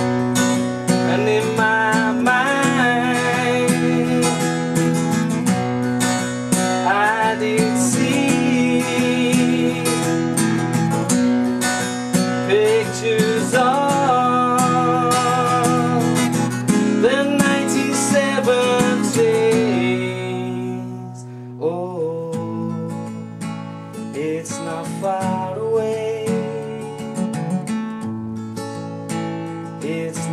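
Steel-string acoustic guitar strummed and picked in a folk song, with a man's voice carrying a wordless melody over it. About twenty seconds in, the singing drops away and the guitar plays on more softly.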